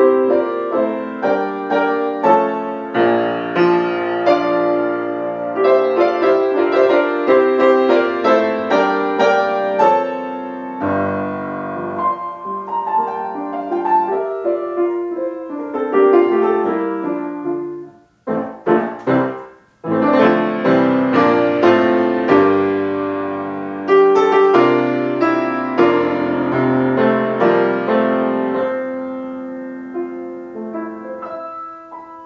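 Solo grand piano playing classical music. About two-thirds of the way through, the playing thins to a few separate chords with short gaps between them, then the full texture returns.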